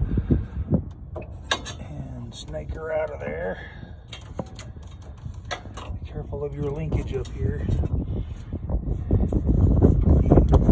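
Hands working wiring loose around a small engine's ignition coil: scattered light clicks and knocks of wires, connectors and metal parts. A voice is heard briefly twice, and a low rumble builds near the end.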